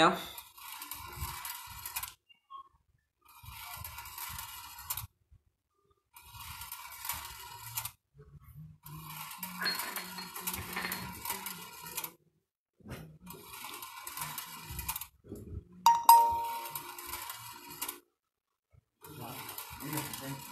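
Homemade wire-track ball machine running: balls rattle along the looping wire rails and the coil-spring lift, in stretches broken by short gaps. A single ringing ding about sixteen seconds in is the loudest sound.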